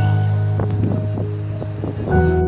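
Background music: held chords over a steady deep bass note.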